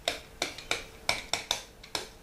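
A stylus pen tapping and scraping against an interactive whiteboard screen while writing a word by hand: about seven sharp, irregular clicks over a faint steady hum.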